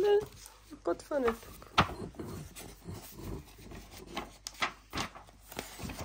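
A series of sharp clicks and knocks from the parts of a ride-on unicorn toy being handled and fitted together, with a brief voice about a second in.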